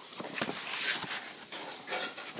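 Paper pages of a picture book being handled and turned, with a brief rustle about a second in.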